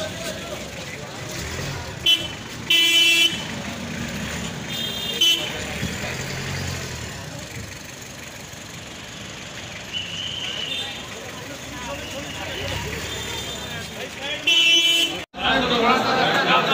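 Vehicle horns honking in short blasts over street traffic and crowd murmur: a loud honk about three seconds in, a short toot about two seconds later, and another longer honk near the end.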